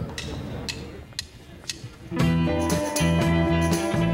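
Live rock band with electric guitars, bass and drums, playing California 60s-style rock. Four light clicks come about half a second apart, then the full band starts about two seconds in.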